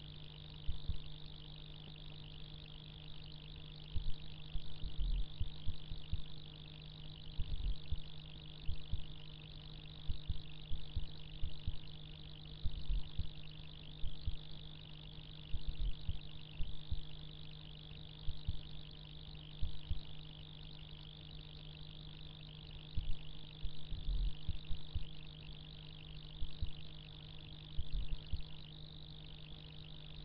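Steady low hum and a steady high-pitched drone, with irregular low thumps scattered throughout.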